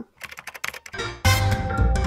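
Quick computer-keyboard typing clicks for about a second, then intro music comes in with a heavy bass-drum beat and steady synth tones.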